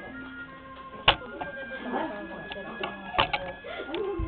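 A few sharp knocks: one about a second in and a quick pair a little after three seconds, over faint steady music tones.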